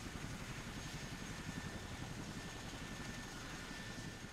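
Military transport helicopter's turbine engines running steadily, a low rumble with a faint high whine over it.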